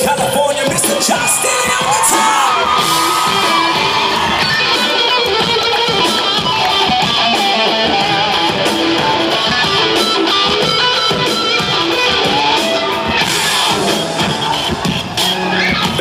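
Rock band playing live, with guitars and a full band sound, as heard from the audience, with the crowd cheering and yelling over the music.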